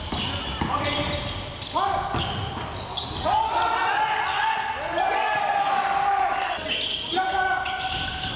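A basketball bouncing and being dribbled on a hardwood gym floor during live play, with players' long shouted calls echoing in the hall.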